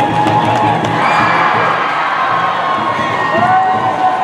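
A large crowd cheering and shouting, with several long high-pitched calls held above the steady din.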